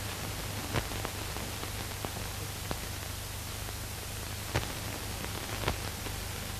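Steady hiss and low hum of an old film soundtrack, with a few faint scattered clicks.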